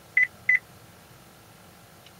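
Two short high beeps from the Cadillac Escalade's chime, about a third of a second apart. This is the vehicle's acoustic signal that the held-down key fob has been learned: the remote is now programmed.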